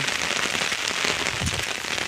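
Heavy rain pattering steadily on an umbrella held just overhead.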